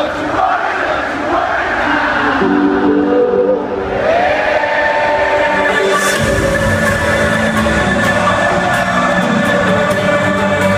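Electronic dance music from a DJ set over a loud festival sound system, with the crowd shouting. A synth melody enters about two seconds in, a rising sweep follows around four seconds, and the full beat with heavy bass drops in about six seconds in.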